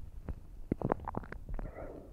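Faint rustling of clothing and a few soft taps as a person lying on a wooden floor slides her bare feet in and draws both knees up, picked up by a body-worn microphone.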